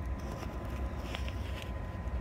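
An RV furnace running, heard from directly beneath the trailer as a steady low rumble with a faint click about a second in.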